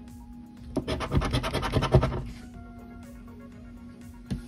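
A coin rubbed quickly back and forth over the latex of a scratch-off lottery ticket: a run of rapid scraping strokes starting just under a second in and lasting about a second and a half.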